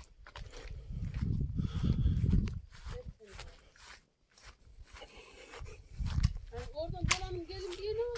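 Faint, indistinct voices with low rumbling noise on the microphone in two stretches, and a brief near-silent moment about halfway through.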